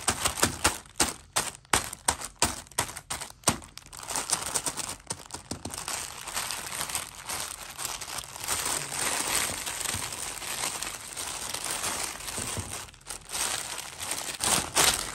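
Clear plastic bag crinkling as hands press and handle it. Sharp, separate crackles over the first few seconds give way to denser, continuous rustling, with a short lull near the end.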